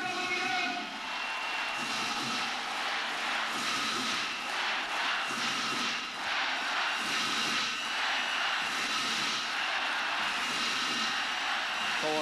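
Large arena crowd cheering and shouting as one steady din, with no single voice standing out.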